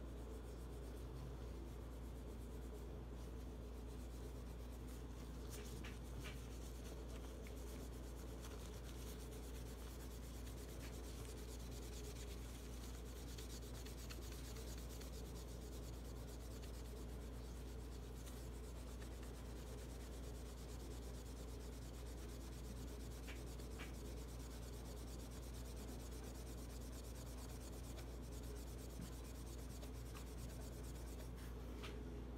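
Metal polish being buffed by hand onto a bare steel pistol slide (a Taurus 709 Slim): a soft, steady back-and-forth rubbing, over a low steady hum. The slide has been stripped of its black finish and is being polished toward a mirror shine.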